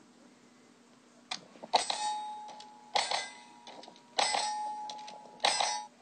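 Pistol shots at a steel target, about four shots roughly a second apart, each hit leaving the steel plate ringing with a clear 'ding' that carries on between shots. The cadence fits a draw, shot, reload, shot drill. The recording is a phone screen capture, so it sounds thin.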